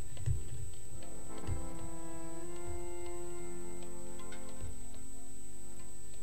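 Harmonium holding soft sustained chords, the notes shifting a few times, with a few scattered low thumps.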